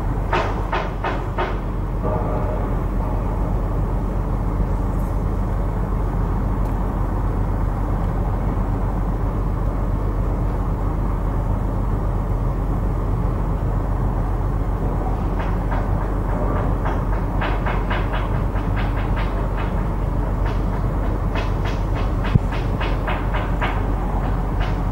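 Steady low rumble, with runs of quick, evenly spaced claps or knocks at about four a second near the start and again through the last third.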